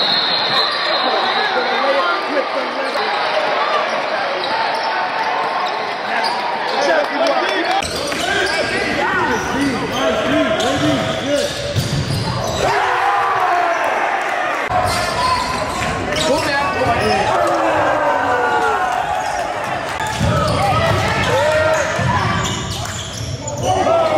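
Game sound from indoor basketball: a ball dribbling and bouncing on a hardwood court amid the shouts and chatter of players and spectators, changing abruptly at the edits between clips.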